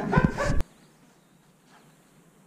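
A dog's brief vocal sound with a few low thumps, cut off abruptly just over half a second in.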